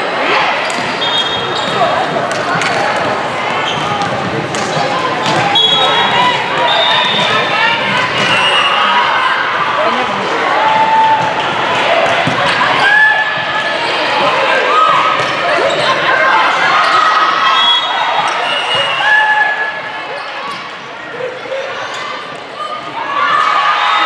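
Indoor volleyball play in a large, echoing gym: the ball being struck, sneakers squeaking briefly on the court, and players and spectators calling out. The voices rise near the end as a point is won.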